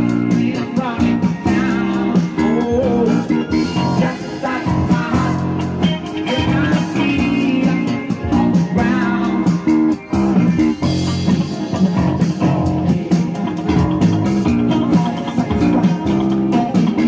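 Live rock band playing: an electric guitar lead with pitch bends over bass guitar and drums.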